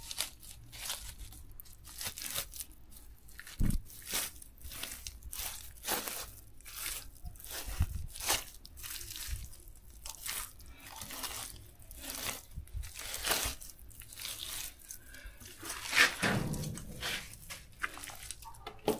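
Irregular crunching and scraping, a stroke or two a second, from hands working a rough soil-and-grass mix for a mud stove, with a louder crunch near the end.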